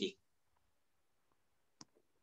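Near silence after the end of a spoken word, broken by one short, sharp click shortly before the end.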